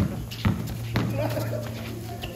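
A basketball dribbled on a concrete court: three bounces about half a second apart, then it stops. Voices are heard in the background.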